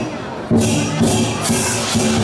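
Chinese dragon-dance percussion: a drum and clashing cymbals beating a steady rhythm, the cymbal crashes landing about twice a second after a brief lull at the start, with a crowd underneath.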